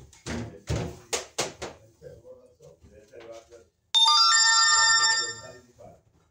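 An electronic ringtone-like chime, several steady tones sounding together, comes in suddenly about four seconds in, holds for just over a second and then fades. It is the loudest sound. Earlier there are a few sharp knocks in quick succession.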